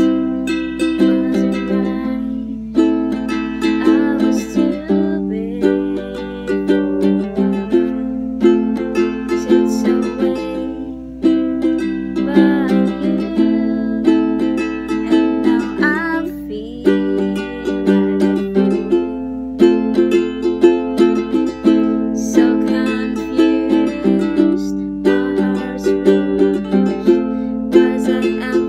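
Ukulele strummed in a steady down-and-up pattern, working through a C, A minor, G and F chord progression and changing chord every few seconds.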